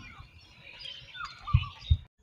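Birds chirping and calling in short gliding notes, with two dull low thumps near the end.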